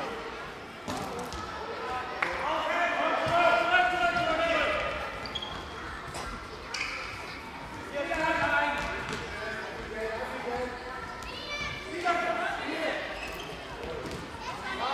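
A handball bouncing and thudding on a sports-hall floor among high-pitched shouting voices, echoing in the large hall.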